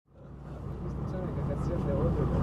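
A low, steady engine hum with faint voices over it, fading up from silence.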